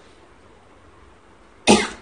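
A woman coughs once, short and sharp, near the end; before it there is only faint room noise.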